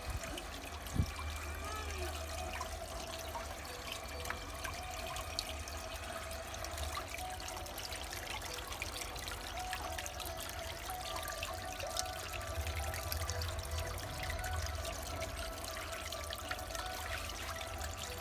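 Water trickling and splashing steadily from a pump-fed terracotta pot fountain into its basin.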